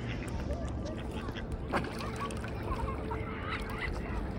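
Mallards and mute swans calling at close range: a scatter of short calls that bend up and down in pitch, with one sharp click about halfway through, over a low rumble.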